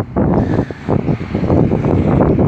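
Wind buffeting a phone's microphone in loud, irregular gusts.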